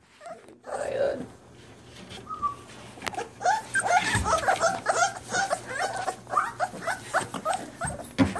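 A litter of five-week-old American Bully puppies whimpering and yipping. From about three seconds in, many short high-pitched calls overlap, one after another.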